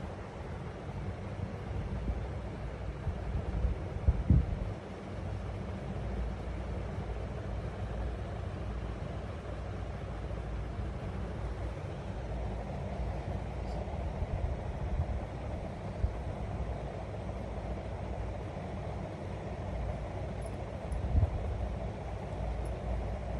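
Steady low rumbling background noise with no clear pitch, with one dull thump about four seconds in.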